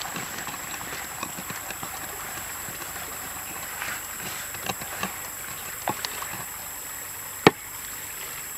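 Wooden pestle pounding chili in a wet sauce in a wooden mortar: irregular soft knocks, with one sharp, louder knock near the end.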